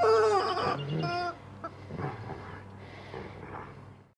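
A dog's squeaky toy chicken squeaking as the dog chews on it: a long, wavering squeak, then a shorter one about a second in, after which it goes quiet.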